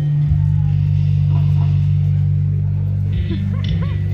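Amplified heavy metal music from a live band: a low bass-and-guitar chord held steady for about three seconds, then moving to other notes near the end.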